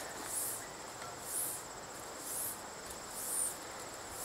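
Insects calling: a short high rising-and-falling buzz repeating about once a second over a steady thin high trill.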